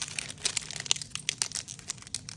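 Crinkling of a foil Pokémon TCG booster pack wrapper being handled and opened: an irregular string of small crackles.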